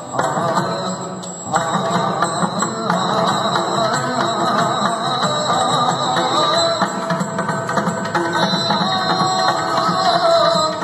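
Yakshagana himmela ensemble: the bhagavata singing over maddale drumming. The music steps up in loudness about one and a half seconds in.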